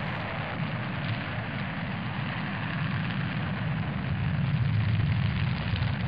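Steady low rumble under an even hiss of rushing noise, the sound effect of a fiery, erupting landscape, with no separate blasts and growing slightly louder over the seconds.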